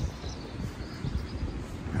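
Outdoor background while walking: a low rumble of wind on the microphone, with a few faint bird chirps in the first second.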